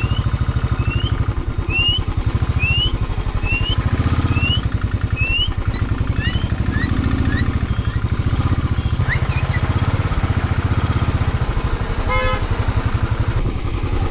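Motorcycle engine running steadily under way, its rapid firing pulses loud throughout. For the first half or so, a series of short, high, rising chirps repeats about once a second.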